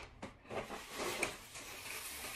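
Plastic shopping bag rustling as it is picked up and handled, starting about half a second in, with a small click about a second later.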